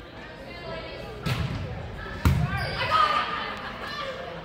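Two sharp thuds of a volleyball, about a second apart, off hands or the hardwood gym floor, followed by voices of players and spectators.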